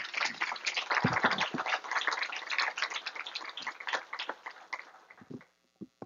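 Audience applauding with many rapid hand claps, dying away about five seconds in.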